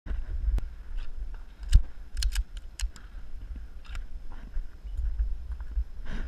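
Wind rumbling on the microphone, with scattered sharp clicks and knocks; the loudest knock comes a little under two seconds in, followed by a quick cluster of clicks.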